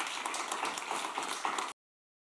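Audience applauding, cut off suddenly near the end.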